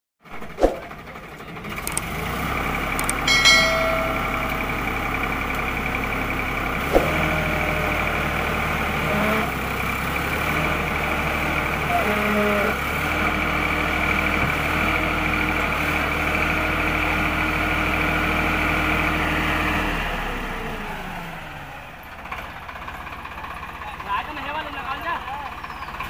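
Standard 345 tractor's diesel engine running hard at steady high revs while bogged in mud. Its revs fall away and the engine note fades about 20 seconds in. Men shout briefly a few times over it, and there is talk near the end.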